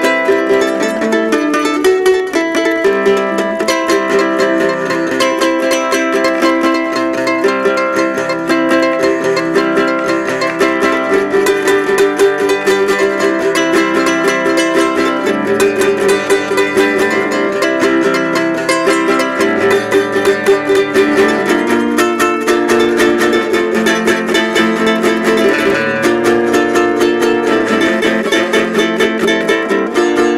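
Yamaha guitalele, a small six-string nylon-strung guitar, played solo: a continuous instrumental passage of fingerpicked chords and melody notes.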